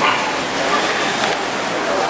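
A dog whimpering and yipping over steady background noise.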